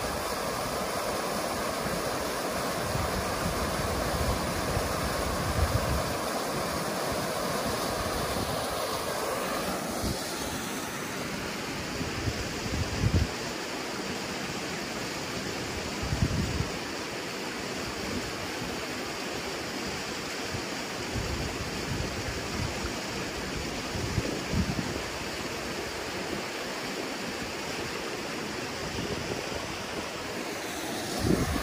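Creek water pouring over a low rock weir, a steady rush that changes about ten seconds in to the lighter, brighter ripple of a shallow creek running over stones. Several brief low gusts of wind hit the microphone.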